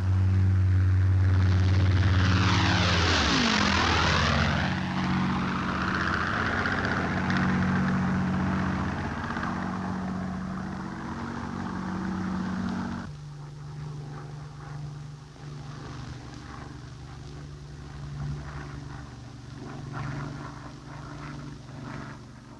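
Twin Rolls-Royce Merlin V12 engines of de Havilland Mosquito bombers flying in formation: a loud drone that sweeps in pitch as the aircraft pass about three seconds in, then a steady engine drone. About 13 seconds in it changes abruptly to a quieter, lower, steady engine drone.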